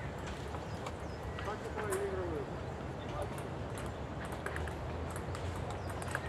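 Table tennis rally on an outdoor concrete table: the ball's light clicks off the paddles and table come in an irregular back-and-forth. A low background rumble runs underneath, and a faint voice is heard about two seconds in.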